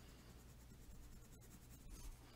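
Near silence: faint scratching of a black coloured pencil shading on paper, over a low steady hum.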